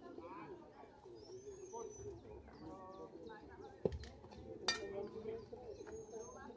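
Distant, indistinct voices of players with birds chirping repeatedly, and two sharp knocks a little under a second apart about four seconds in.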